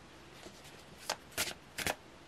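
A tarot deck shuffled by hand: three short rasps of cards sliding against each other in the second half.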